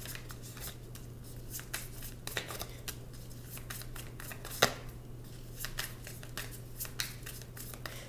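Tarot cards handled and dealt onto a wooden table: a scatter of quick papery flicks and snaps, with one sharper snap a little past halfway.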